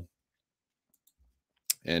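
Near silence, broken near the end by a single sharp click just before speech resumes.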